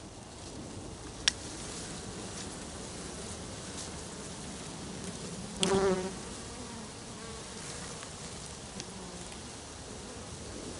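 Honeybee swarm buzzing steadily, the agitated sound of a disturbed swarm, with one bee flying close past the microphone just over halfway through, its buzz briefly loud. A single sharp click about a second in.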